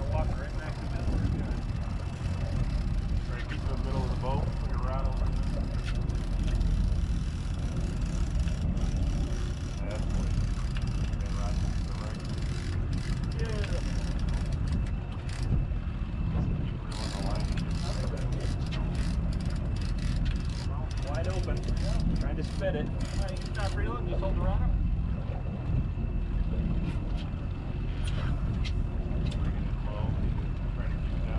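Steady low rumble of a boat running at trolling speed, with wind and water noise, and indistinct voices at times, most around the middle.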